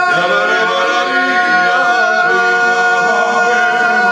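Men singing unaccompanied, holding long notes.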